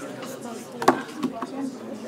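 A sharp knock about a second in, the loudest sound here, followed by a couple of lighter knocks.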